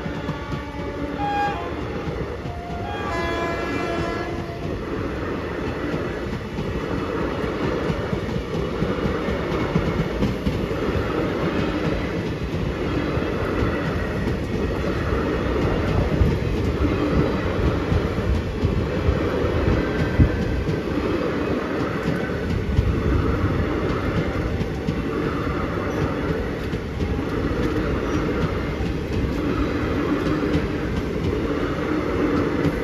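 Horn of an Indian Railways WAP-7 electric locomotive sounding in the first few seconds. Then the passenger train keeps running with steady rail noise and a regular clack of the wheels over rail joints, a little more than once a second.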